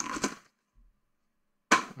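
Silence between a man's words: his speech trails off in the first half-second and he starts speaking again near the end, with nothing audible in between.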